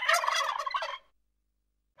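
A turkey gobbling once, a quick pulsing call about a second long.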